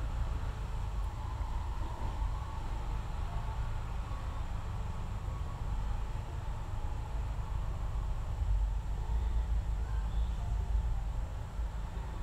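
A steady low rumble of background noise with a faint hiss, a little louder about eight seconds in.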